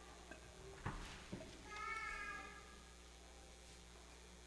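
Two knocks at the lectern, about a second in and again half a second later, as the reader handles the book near the microphone. Then a brief, high-pitched squeak lasting under a second.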